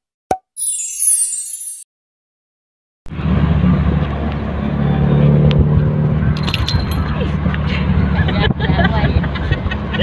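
Title-animation sound effects: a short pop, then a bright sparkling shimmer for about a second and a half, followed by silence. About three seconds in, the sound of a moving car's cabin comes in: a steady low engine and road rumble with indistinct voices and light jingling.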